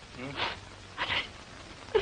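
A woman crying: two short, soft sobs, about half a second and a second in.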